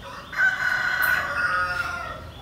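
A rooster crowing once: one long call beginning about a third of a second in and fading just before the end.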